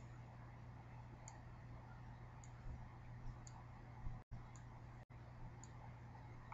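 Faint computer-mouse clicks, about one a second, over a steady low hum.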